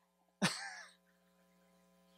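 A man's single short throat-clearing sound into a handheld microphone, about half a second long, starting sharply and fading away, about half a second in.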